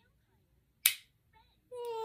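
A single sharp click from an Omnipod insulin pod as its spring-loaded inserter fires the cannula into a toddler's arm. Near the end the toddler lets out a long, steady wail.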